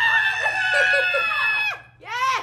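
A young woman's long, high-pitched squeal of excitement at a gift, held for nearly two seconds and then falling away.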